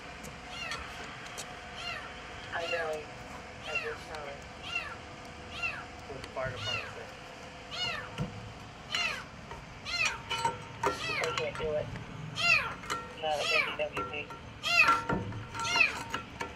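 A kitten trapped in a storm drain, crying with repeated high meows. The calls come about once a second at first, then faster, louder and overlapping in the second half.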